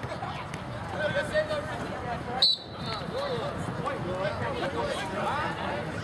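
Spectators' voices chattering on the sidelines, several people talking over one another, with one sharp click about two and a half seconds in.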